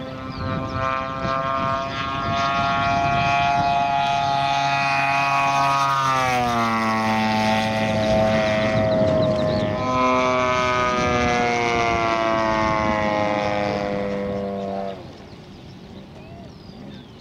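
3W 70cc petrol engine and propeller of a 1/5-scale RC SBD Dauntless model running at speed on a low pass: a steady buzz whose pitch drops about six seconds in as it goes by. It then runs on at a slightly falling pitch and cuts off sharply about a second before the end.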